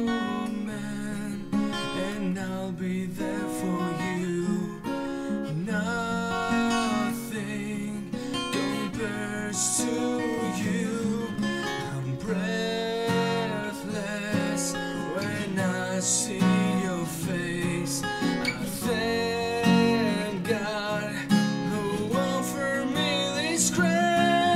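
Acoustic guitar music, an instrumental passage of a slow ballad: strummed chords with a bending melody line above them.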